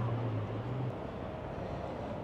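A car engine's low steady hum over street background noise, dropping away about a second in.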